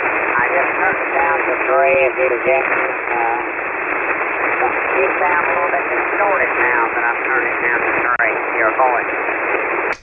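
Single-sideband voice received over a ham radio amid steady band hiss, the speech garbled and unintelligible: the sending station is tuned high off frequency, which the operator puts down to a bumped VFO.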